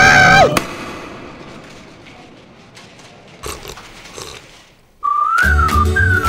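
A cartoon character's wailing cry over a steady music tone, cut off suddenly about half a second in, then a long fading tail with a few faint sounds. About five seconds in, a short musical sting starts: a whistled melody that rises and falls over bass.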